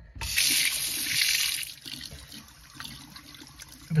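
Water from a sink tap running and splashing over hands being washed. It is loud for the first second and a half, then quieter.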